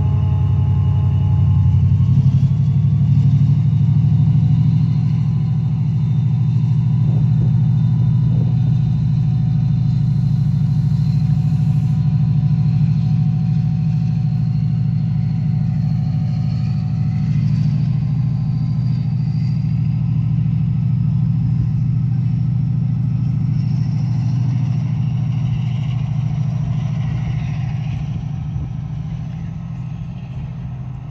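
Class 68 diesel locomotive's Caterpillar V16 engine running under power as it propels its train away, a loud steady low drone with a faint whine slowly rising in pitch. The sound fades in the last few seconds as the train draws away.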